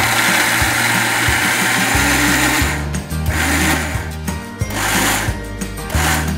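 Electric mixer grinder with a stainless-steel jar grinding chutney: one long run of nearly three seconds, then three short pulses.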